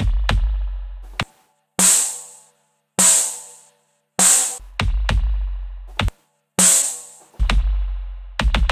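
Programmed electronic drum beat playing back: kick drum hits over a deep, sustained sub-bass, then four bright snare-like hits about a second apart in the middle while the bass drops out, with brief silent gaps between them. The bass and kick pattern returns near the end.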